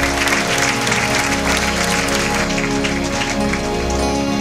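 A congregation clapping and applauding over background music with steady held chords.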